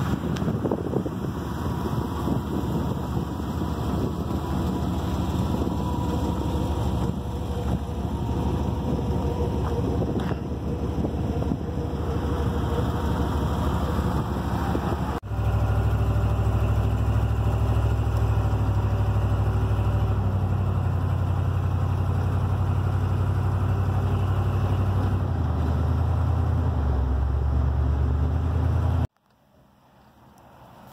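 Old Chevrolet square-body dually pickup's engine running. About halfway there is a cut, and the truck is driving, its engine a steady low drone heard inside the cab; it shifts slightly near the end and cuts off suddenly just before the end.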